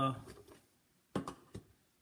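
A man's voice trails off, then a few light clicks from small objects being handled on a bench about a second in.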